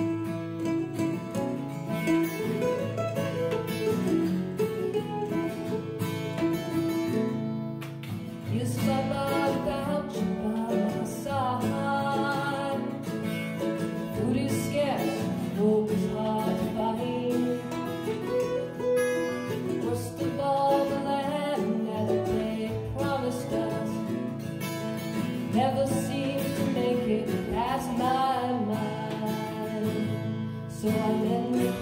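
A folk duo playing: acoustic guitar strumming with an F-style mandolin, and a woman singing lead from about eight seconds in.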